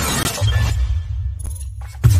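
Cinematic intro sound effects: a noisy burst that fades over the first second or so, over a deep bass rumble that comes in about half a second in.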